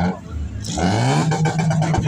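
Ford Mustang's engine revving: its pitch climbs about halfway through, then holds at a steady higher speed.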